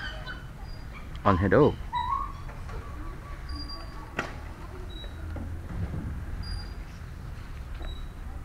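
Outdoor background: a low steady rumble with a few short, high bird chirps scattered through it, and a single sharp click about four seconds in. A brief spoken phrase comes about a second in.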